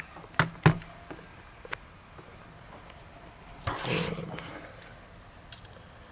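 Two sharp clicks in quick succession about half a second in, then a short rustling burst about four seconds in: a micro-USB cable plug being handled and pushed into the port on the back of an Apple TV.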